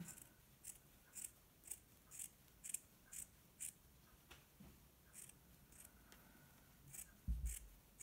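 Small scissors snipping through the yarn bars of a steek in stranded Fair Isle knitting: quiet, crisp snips about twice a second, a pause midway, then a few more. A soft low thump near the end.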